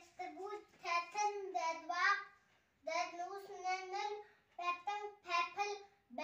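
A young boy chanting the Hindi alphabet in a sing-song voice, in three drawn-out phrases with short breaks between them.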